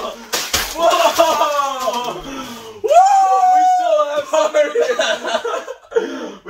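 Excited shouting and yelling from two men, with one long held yell about three seconds in. There are a couple of sharp smacks about half a second in.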